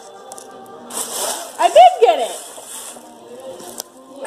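Crinkly gift wrapping rustling as a present is pulled out of a gift bag. The rustling starts about a second in and stops just before the end. A short voice sounds in the middle of it.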